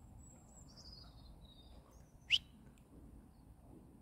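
Bird chirps: a few faint, short, high falling calls in the first two seconds, then one sharp rising chirp a little past the middle, over a faint low rustle.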